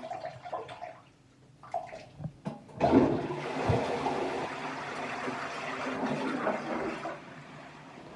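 Toilet flushing: a sudden rush of water about three seconds in that slowly dies away.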